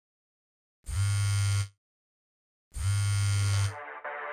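An iPhone's vibrate motor buzzing against a hard surface, twice, each buzz just under a second long with a second's pause between, a low steady buzz.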